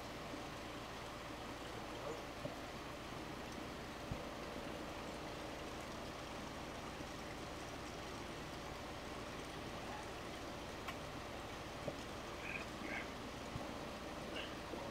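Steady hiss of a Carlisle CC lampworking torch flame burning at the bench, with a few faint clicks.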